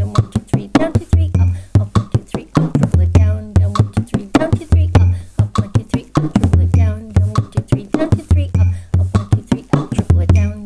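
Bodhrán played with a tipper in a 9/8 slip-jig rhythm at 100 beats per minute: a quick, steady run of strokes with deep low booms on the accented beats and fast three-stroke 'triplet' figures.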